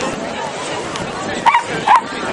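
A dog barking twice in quick succession near the end, over steady crowd chatter.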